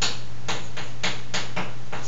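Chalk writing on a blackboard: a quick run of short, sharp taps and strokes, about seven in two seconds at uneven spacing, over a steady low hum.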